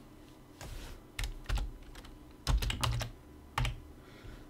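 Typing on a computer keyboard: a handful of separate keystrokes, with a quick cluster about two and a half seconds in, while a file name is edited.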